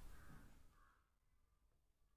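Near silence: faint room tone that fades to complete silence under a second in.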